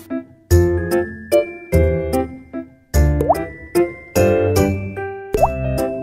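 Bright, upbeat children's background music with a steady beat, with two short rising bloop sound effects, about three and five and a half seconds in.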